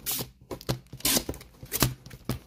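Bagged-and-boarded comic books being flipped through one by one in a cardboard box: plastic sleeves rustling and slapping against each other in several short bursts.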